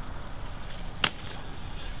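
A single sharp click or knock about halfway through, over a low steady background rumble.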